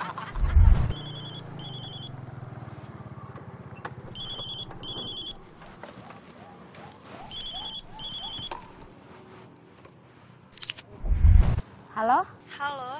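A mobile phone ringing with a double-ring tone: three high-pitched rings about three seconds apart, each two short bursts. A loud low thump sounds near the start and another near the end.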